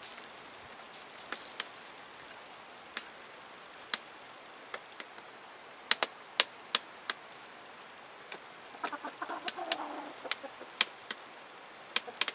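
Chickens pecking at food on a wooden feeding tray: sharp, irregular taps of beaks on the board. About nine seconds in, a hen gives a short run of soft clucks.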